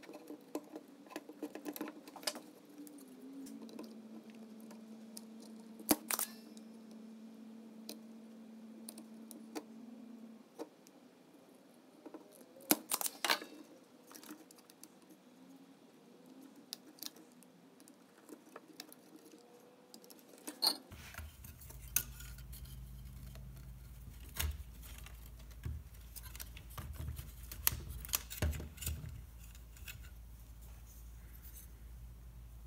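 Scattered small metallic clicks and clinks of pliers, a soldering iron and wires being handled on an old tube radio's sheet-metal chassis, with a few sharper taps. A faint low hum comes in about two-thirds of the way through.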